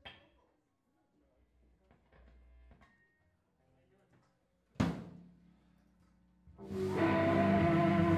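Faint taps and handling noise from a rock band's gear, then a single loud drum hit with a ringing tail about five seconds in. Near the end the band comes in loud with a sustained, ringing electric guitar chord over drums and cymbals.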